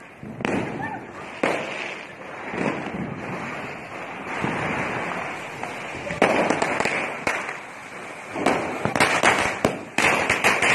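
Firecrackers going off on the road: a quick run of sharp cracks starts about six seconds in and grows denser near the end.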